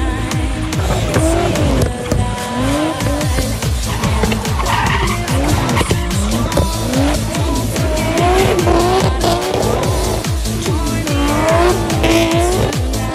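Drift cars' engines revving up and down in repeated sweeps, with tyres squealing as they slide, mixed under dance music with a steady beat.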